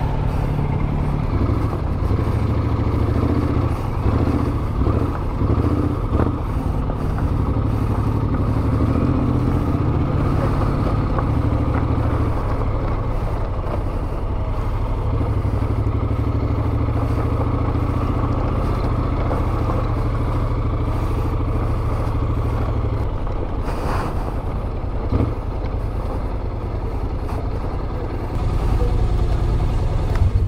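Motorcycle engine running steadily at low speed, a continuous low thrum, with a short click about three-quarters of the way through.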